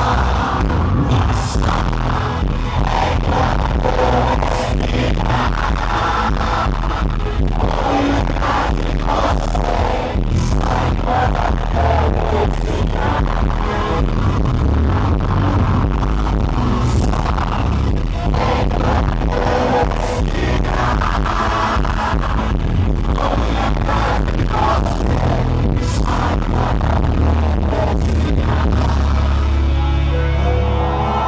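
A live band playing loudly in a concert hall, heard from within the audience, with frequent sharp drum hits all through.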